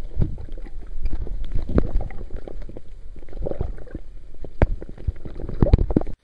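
Muffled gurgling and sloshing of river water heard by a camera held underwater, over a constant low rumble, with frequent knocks and thumps of water and handling against the camera.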